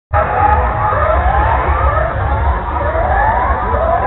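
A siren-like wail in repeated rising sweeps, a little more than one a second, over a heavy low rumble.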